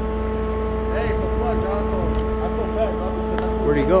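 Steady drone of large marine machinery: a constant low rumble with a held mid-pitched tone and fainter steady overtones.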